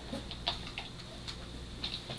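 Faint, scattered computer keyboard clicks over a low, steady background hum.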